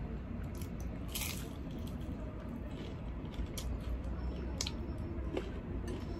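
A crunchy bite into a crispy fried morsel about a second in, followed by chewing with a few sharp crunches.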